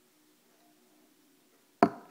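Quiet room with a faint steady hum, then a single sharp knock near the end.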